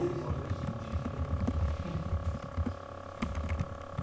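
Computer keyboard typing: scattered faint key clicks over a steady low electrical hum.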